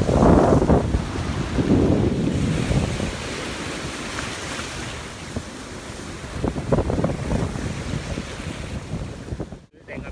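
Sea waves washing in, with wind buffeting the microphone, loudest in the first few seconds and easing after. The sound cuts out briefly just before the end.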